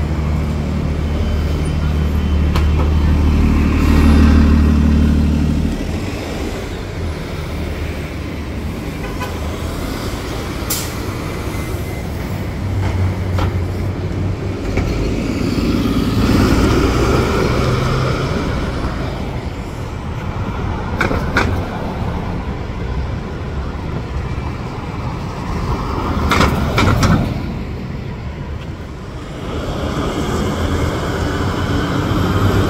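City transit bus engines on a downtown street. One bus's drone is loud for the first six seconds and cuts off abruptly, and a second bus passes from about twelve to eighteen seconds in. Steady traffic noise runs underneath, with a few sharp clicks.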